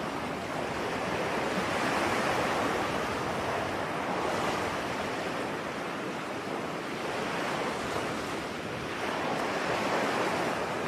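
Ocean surf: a steady wash of wave noise that swells and eases every few seconds.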